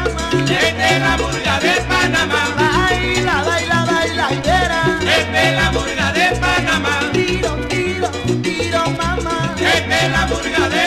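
Salsa band recording in an instrumental passage without vocals: pitched lead lines swoop and bend over a steady bass and percussion rhythm.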